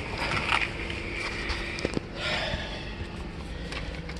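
Handling and movement noise as a person gets into a car's driver seat: scuffing and rustling with a few light clicks and knocks, and the engine not yet running.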